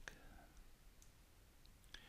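Near silence: faint room tone, with a faint click at the start and another just before the end.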